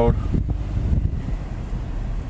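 Wind buffeting the microphone as a gusty low rumble, over the road noise of a car driving slowly.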